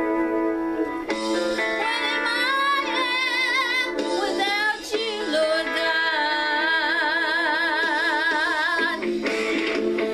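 A woman singing a slow worship song, holding long notes with a wide vibrato, with a short breath break about halfway through.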